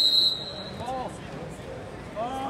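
A high, steady whistle tone that ends about a third of a second in. After it come the chatter of a gym crowd and a distant voice.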